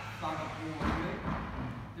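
A man talking, with a brief thud a little under a second in.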